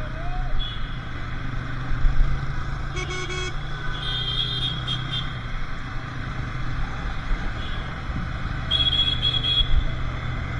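Motorcycle riding through city traffic: a steady engine and road rumble, with short, high-pitched honks from vehicle horns at about three seconds, again at four to five seconds, and near the end.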